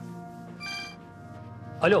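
Mobile phone ringtone chiming briefly about half a second in, over a quiet sustained music underscore; the call is answered near the end.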